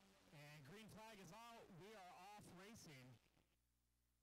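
A man's voice speaking for about three seconds, at a low level.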